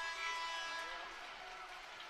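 Ice hockey arena ambience: a faint crowd murmur under a steady, several-toned sound that fades away during the first second or so.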